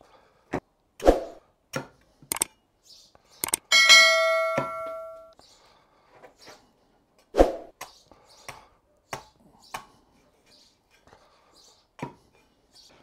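A meat cleaver chops through bone-in pork loin onto a wooden stump block in about ten sharp chops, with a pause around the middle. One chop about four seconds in leaves the blade ringing with a clear metallic tone that fades over a second or so.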